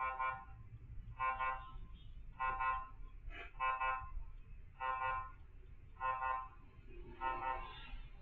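Vehicle reversing beeper sounding a pitched, multi-tone beep about once every 1.2 seconds, over a low rumble, as the SUV backs up.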